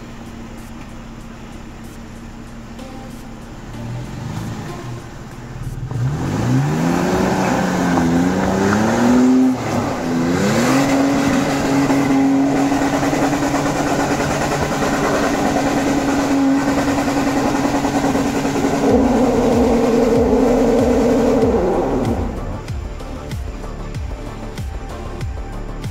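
Toyota FJ Cruiser's V6 engine revving hard on a steep slippery climb. The revs rise in steps from about six seconds in, hold high and steady for about ten seconds while the wheels spin in the wet clay and throw mud, then drop away near the end.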